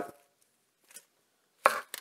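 Chef's knife slicing down through a raw onion onto a wooden cutting board: a short crisp crunch near the end, with a faint tick about a second in. The cut is made with light pressure.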